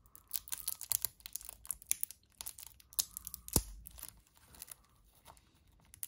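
Cellophane wrapper on a deck of playing cards crackling as it is slit with a knife blade and picked at with fingertips: a run of small, sharp crinkles, with one louder tap a little past halfway.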